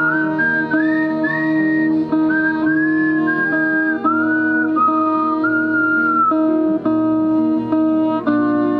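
Acoustic guitar playing steady chords under a bowed violin melody that slides between long held notes.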